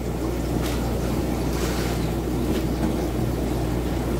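Steady low rumbling noise with a constant low hum underneath, starting as the talk stops and holding even.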